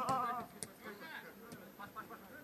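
A voice with a wavering pitch for about half a second, then faint background noise with a few light knocks.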